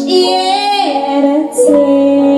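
A woman singing live into a microphone, holding long sung notes, accompanied by acoustic guitar and grand piano.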